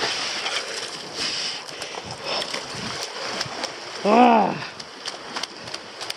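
Sea water washing and splashing over shoreline rocks, with scattered light clicks. About four seconds in, a man's short wordless exclamation rises and falls in pitch and is the loudest sound.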